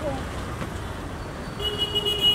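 Street traffic noise, with a vehicle horn starting near the end and held as one steady tone.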